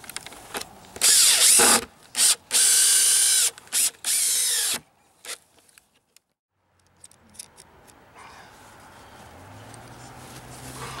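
Cordless drill running in about five short bursts over four seconds, the two longest about a second each, as it drives fasteners into the wooden nest platform. It then stops.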